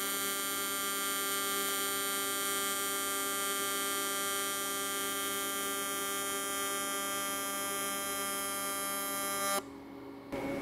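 AC TIG welding arc from an Everlast Lightning MTS 275 inverter set to 200 Hz with a triangular wave, making a steady buzz pitched at the 200 Hz AC frequency. The arc cuts off suddenly near the end.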